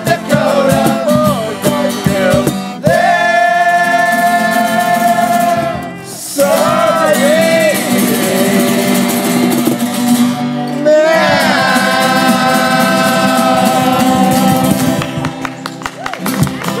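A group of men singing together to strummed acoustic guitars and a resonator guitar, with two long held notes sung in unison about three seconds in and again about eleven seconds in.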